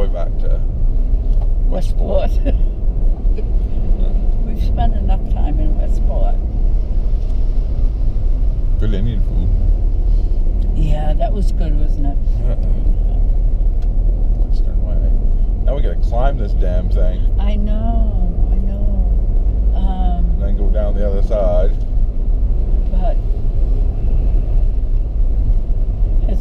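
Steady low rumble of a car's engine and tyres on a narrow road, heard from inside the cabin, with voices talking now and then over it.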